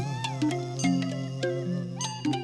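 Traditional Burmese stage-show music. A pitched melody with bending, sliding notes (a falling slide at the start) runs over low sustained notes and is punctuated by sharp percussive clicks.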